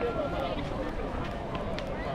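Crowd chatter: many people's voices talking at once, overlapping at a steady level, with no single speaker standing out.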